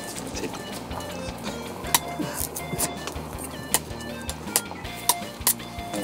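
Light background music with a scatter of short, sharp cuts and clicks at irregular intervals: a machete blade striking and stripping the hard skin off a sugar cane stalk.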